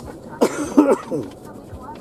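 A person speaking a few words about half a second in, set off by a short sharp burst like a cough.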